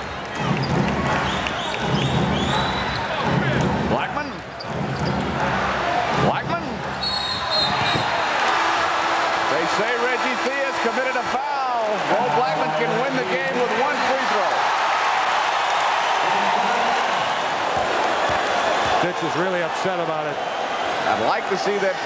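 A basketball dribbled on a hardwood arena floor, a low thud about once a second, over arena crowd noise on an old TV broadcast. The crowd noise grows and holds from about eight seconds in.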